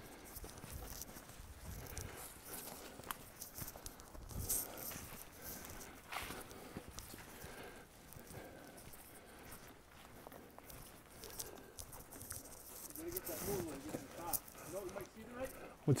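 Footsteps on a trail covered in dry fallen leaves, a quiet, irregular crunching and rustling as hikers walk.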